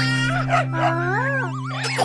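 A cartoon puppy giving several short dog cries that rise and fall in pitch, over a held music chord.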